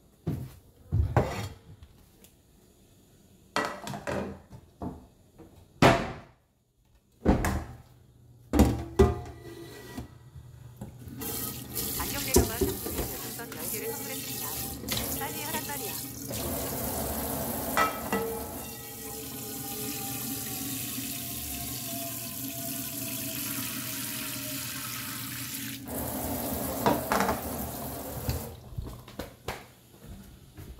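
A frying pan knocking and clattering as it is pulled from a kitchen cupboard, then a kitchen tap running into the pan in a stainless-steel sink for about fifteen seconds, filling it with water; the water stops abruptly and more clatter follows as the pan is set down.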